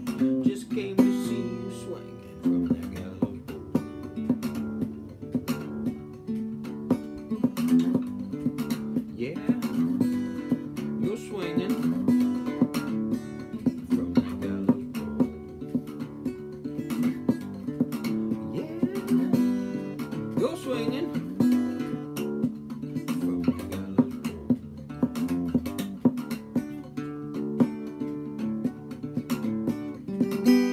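Small-bodied acoustic guitar played clawhammer style in drop D tuning, a steady rhythmic picking pattern of bass notes and brushed strums. This is an instrumental break between sung verses.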